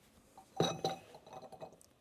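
Glassware set down on a wooden counter: two ringing clinks about a quarter second apart, then a few lighter knocks.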